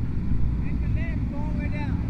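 Yamaha TW200's air-cooled single-cylinder engine running at low speed as the bike rolls slowly, a steady low rumble, with a man's voice faint in the background.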